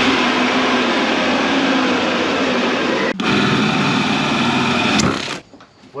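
Cordless wet/dry shop vacuum running steadily, switched off about five seconds in.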